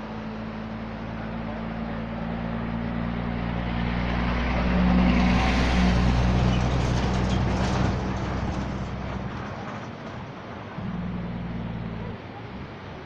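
A heavy truck driving past close by: a steady low engine drone that grows louder, peaks around the middle and fades away, then swells again briefly near the end.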